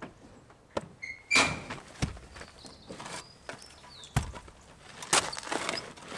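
Scattered knocks and thuds, about five over several seconds, from hands-on building work around a timber frame and stones; one knock is followed by a brief ringing tone.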